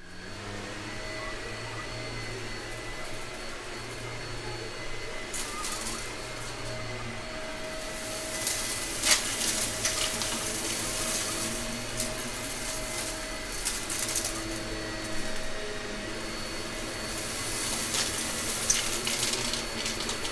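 Gray Shark upright vacuum running with its brushroll on over carpet, giving a steady motor whine. It picks up a scattered glitter mix, with clicks and crackles of debris going up that become more frequent from about eight seconds in.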